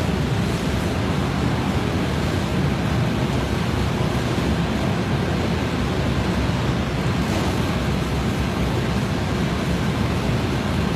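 Steady, even rushing noise with no distinct events: the running background of a commercial kitchen.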